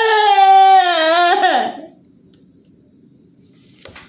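A young child's long, drawn-out whine, high-pitched and wavering, falling slightly before it breaks off about two seconds in.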